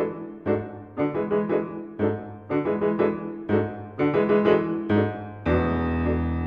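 Background piano music: struck chords and notes in a steady rhythm of about two a second, moving into a long held chord near the end.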